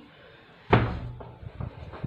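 A single heavy thump about two-thirds of a second in, dying away over half a second, followed by a few lighter knocks.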